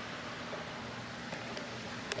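Quiet outdoor background: a steady low hiss with a faint constant hum and no distinct events.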